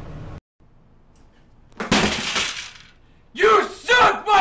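A sudden loud crash about two seconds in, lasting about a second, then a young man yelling in several loud bursts near the end.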